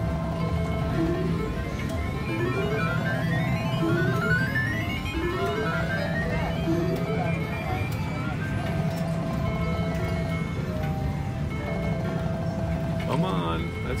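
Cleopatra Keno video keno machine playing its bonus-round sounds: a steady looping electronic tune, with a string of short rising tones about every three-quarters of a second through the first half, as each number is drawn.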